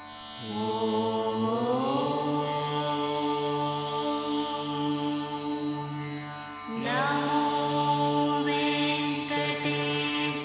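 Devotional mantra chanting in long held notes over a steady drone. Each of the two held notes slides up in pitch as it begins, the second starting about seven seconds in.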